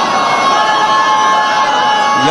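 Large crowd of men shouting together, a loud collective cry with held notes in it.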